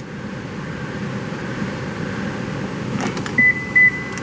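Steady running noise inside a car's cabin. About three seconds in comes a faint click, then two short, high electronic beeps near the end.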